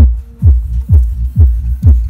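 A 30 cm (12-inch) AVPro GD-12Pro powered subwoofer playing electronic dance music. A deep, sustained bass line runs under a punchy kick drum that lands a little over twice a second, each hit dropping in pitch.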